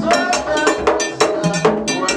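Haitian Vodou ceremonial music: a fast, steady beat of drums and a struck metal bell, with voices singing over it.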